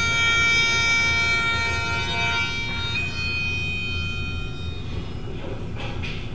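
Bagpipes playing long held notes, stepping up to a higher note about halfway through, then fading out in the last couple of seconds.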